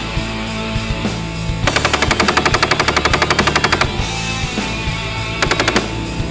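Automatic machine-gun fire: one long burst of about two seconds of rapid, evenly spaced shots, then after a pause a short burst near the end, over heavy-metal music.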